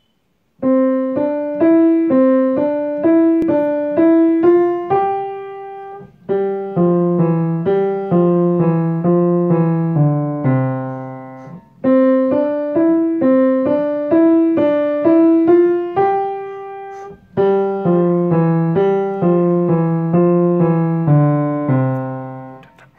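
Piano playing a simple beginner's melody in three-four time, single notes stepping up and down at about two a second, passed between the hands. It falls into four phrases, each ending on a held note before a short break. This is the student part alone, without the duet accompaniment.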